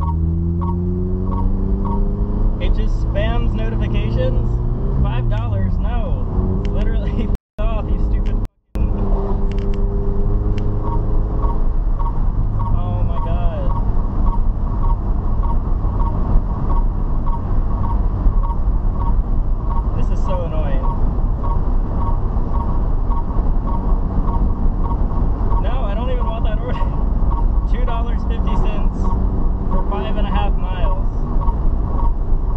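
Subaru BRZ's flat-four engine heard from inside the cabin while driving. Its pitch rises with the revs over the first few seconds, then drops at a gear change about five seconds in. The sound cuts out briefly twice, around seven and eight seconds in.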